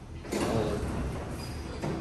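Schindler elevator's two-speed sliding doors closing: a sudden rush of noise about a third of a second in that fades over a second, with a shorter second bump near the end.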